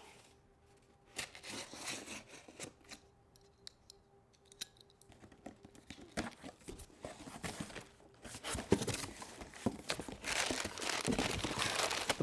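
Packing tape being cut and torn on a large cardboard box, in short scattered scrapes with quiet gaps between. Toward the end the flaps are pulled open and paper packing is crinkled, the busiest stretch.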